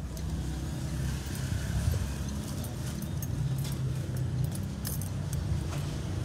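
Steady low rumble of a Toyota Land Cruiser's engine idling, heard from inside the cabin, with scattered light clicks and rustles as the interior controls are handled.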